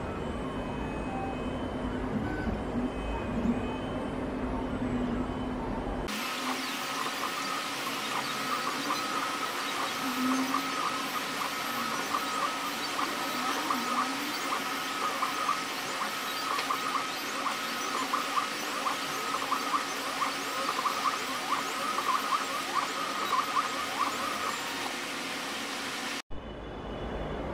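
iDraw 2.0 pen plotter's stepper motors whirring in short, quick moves as the pen draws. About six seconds in, the sound changes to a higher, busier whine with rapidly repeating chirps and small ticks.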